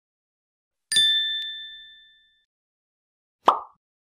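Logo-animation sound effects: a bright bell-like ding about a second in that rings out and fades over about a second, then a short pop near the end.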